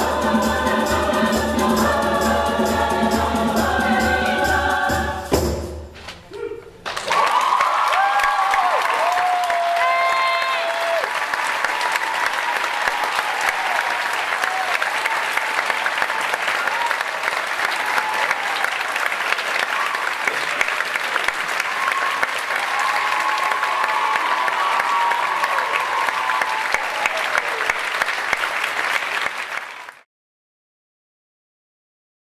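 Concert choir singing over hand drums, the piece ending with a sharp cutoff about five seconds in. After a brief hush the audience breaks into sustained applause with whoops and cheers, which stops abruptly at the end.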